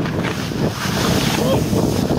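Skis scraping and sliding through soft, lumpy spring snow on a mogul run, with wind noise on the microphone: a loud, steady noise throughout.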